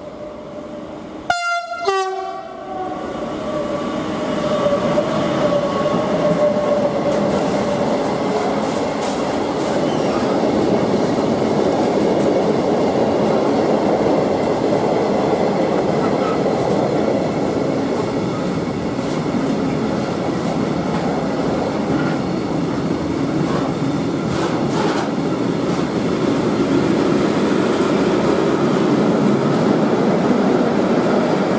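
A short, loud horn blast from an electric freight locomotive about a second and a half in. Then a long freight train passes at speed, a steady rolling rumble of wagon wheels on rail with a few faint rail-joint clicks.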